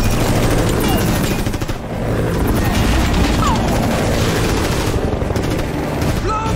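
Film action sound mix: sustained rapid automatic fire from a helicopter's door-mounted machine gun over a heavy, steady low rumble of helicopter rotors and engine.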